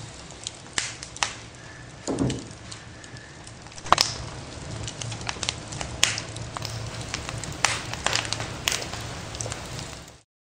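Wood fire burning in a fireplace, crackling with sharp pops scattered irregularly over a steady low rush. About two seconds in there is a falling whoosh.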